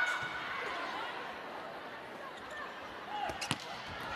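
Volleyball rally in an indoor arena: a steady murmur of the crowd, with two sharp smacks of the ball being struck about three and a half seconds in.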